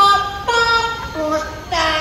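A parrot singing a short song in Chinese in a child-like voice into a handheld microphone. It sings about four held notes, each roughly half a second long, stepping up and down in pitch.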